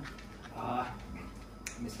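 A brief pause in speech: a soft, short bit of voice, then a single sharp click a little past one and a half seconds in.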